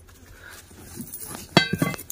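Quiet scraping and knocking of broken brick pieces and loose soil being lifted out of a freshly dug pit by hand. About one and a half seconds in, a short high-pitched call cuts in.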